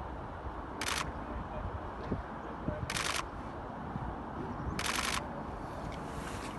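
Three short bursts of camera shutter clicks, roughly two seconds apart, over steady low background noise.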